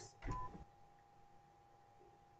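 Stepper motor spinning one quick revolution on command from its drive: a short buzz with a brief high whine in the first half second, then near silence over a faint steady hum.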